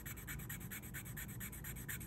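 A jewelry piece rubbed quickly back and forth on a jeweler's test stone, making a fast, even scratching of about ten strokes a second. The rubbing tests whether the metal is sterling silver.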